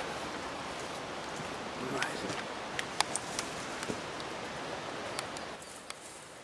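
Steady outdoor hiss of wet forest ambience, with a few small scattered ticks and snaps, and a faint voice briefly about two seconds in.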